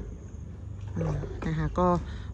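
A woman speaking briefly in Thai over a steady low rumble, the voice starting about halfway through.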